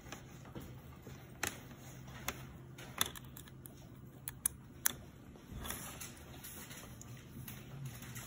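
Light clicks and taps of a small circuit board being handled and a USB plug being pushed into its USB-A socket, the sharpest clicks in the middle, over a faint steady low hum.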